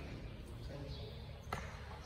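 Faint, indistinct voices over a low steady hum, with a single sharp click about one and a half seconds in.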